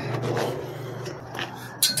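Rubbing and scraping from the camera being handled and moved, over a steady low hum, with a couple of sharp clicks near the end.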